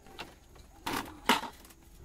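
Black plastic bucket handled and set down on a bamboo floor: two sharp clattering knocks about a second in.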